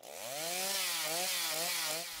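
Stihl two-stroke chainsaw running, growing louder over the first half second and then holding steady with a slightly wavering pitch.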